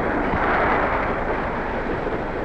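Dense, steady rushing noise of a railway snowplow locomotive driving through deep drifts and hurling up snow, swelling about half a second in.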